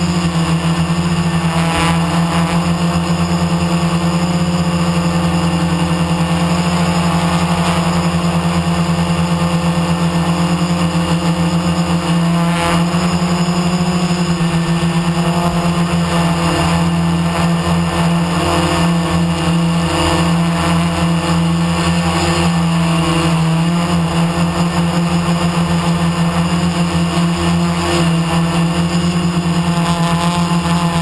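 Multirotor drone's electric motors and propellers running in flight: a loud, steady hum, heard through the camera carried on board.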